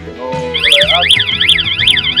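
Electronic warning buzzer on a 6000 L 4x4 self-loading concrete mixer sounding, a loud high warbling tone that sweeps rapidly up and down about five times a second, starting about half a second in.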